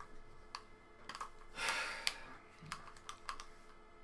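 Irregular clicks and taps on a computer keyboard, a handful of separate strokes spread over the seconds, with a short hiss just before the middle.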